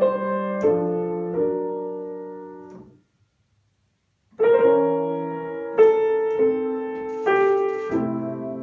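Grand piano playing slow chords, each struck and left to ring and fade. The sound dies away to a full silence of about a second and a half before the chords resume.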